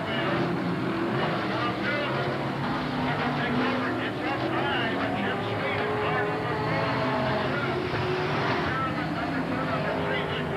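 Dirt-track stock car engines running at racing speed, their pitch rising and falling as the cars circle the oval, with voices mixed in over them.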